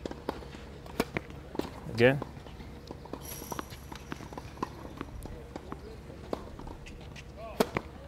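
Scattered sharp pops of a tennis ball on a hard court, ending with the crack of a racket striking the ball on a serve, the loudest pop, near the end.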